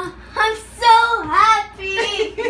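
A child's high voice making three short sing-song sounds with gliding pitch, wordless and laughing.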